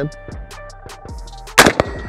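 A single rifle shot about a second and a half in from a Springfield Saint Victor .308 AR-10 rifle fitted with a muzzle brake, fired freehand.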